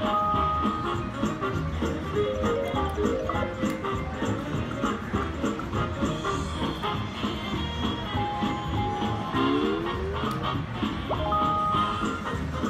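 WMS Gold Fish video slot machine playing its free-spins bonus music and jingles without pause, with a rising run of notes near the end.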